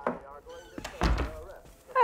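A dull, deep thud about a second in, the sound of a door being shut, with a woman's brief voice sounds before it.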